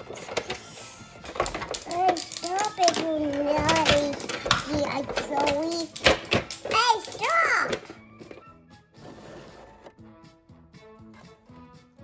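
A young child's voice, high and rising and falling, with scattered clicks and knocks of hard plastic toy parts being handled. From about eight seconds in, only quieter background music.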